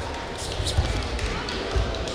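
Taekwondo sparring in a large hall: two dull thuds from the fighters' kicks and footwork on the foam mat, about a second apart, over a murmur of voices.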